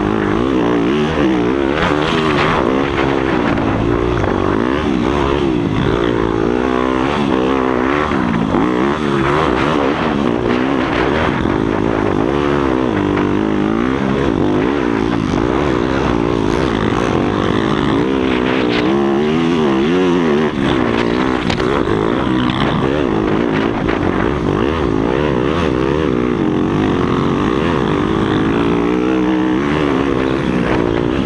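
A Yamaha YZ motocross bike's engine, heard close from on board, revving up and down over and over as it is ridden hard around a dirt track, loud throughout.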